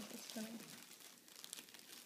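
Faint crinkling of foil gift wrap being handled and crumpled.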